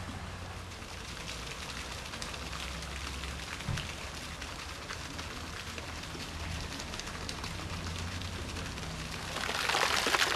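A steady crackling hiss, louder in the last second.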